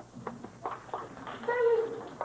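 Children's voices: scattered brief murmurs, then one short drawn-out high-pitched vocal call, falling slightly in pitch, about one and a half seconds in.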